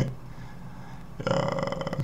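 Quiet room tone, then a little over a second in a man's drawn-out, level-pitched "eh" hesitation sound that lasts most of a second.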